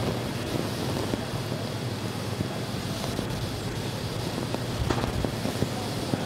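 Steady rushing, wind-like noise of launch-pad ambience while the fuelled Falcon 9 vents clouds of vapour at the end of propellant loading.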